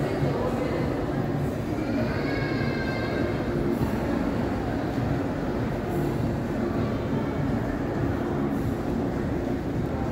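Indoor shopping-mall ambience: a steady low rumble with indistinct voices echoing in a large hard-floored hall, a voice briefly clearer about two to three seconds in.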